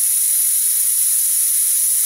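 Vacula air-powered vacuum brake bleeder running, a steady loud hiss of air through its venturi while it pulls vacuum on the brake line.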